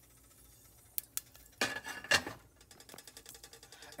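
Mustard seeds in hot peanut oil in a nonstick pot starting to pop and crackle: the first pops as the oil comes up to heat over medium heat. Two sharp pops about a second in, a louder clink around the middle, then a run of faint quick ticks.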